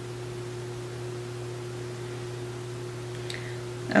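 Steady low electrical hum over faint room hiss, with a faint click about three seconds in.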